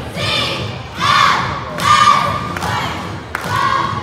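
Middle-school cheerleading squad shouting a cheer in unison: a series of loud shouted calls about a second apart, over cheering from the crowd.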